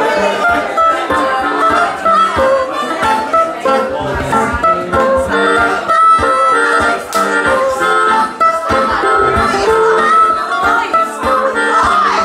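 Live band playing an instrumental passage: an acoustic guitar strummed in a steady rhythm, with a harmonica playing long held notes over it.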